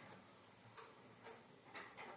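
Near silence: quiet room tone with faint ticks about twice a second.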